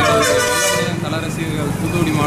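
Vehicle horn sounding once for about a second, over a man talking.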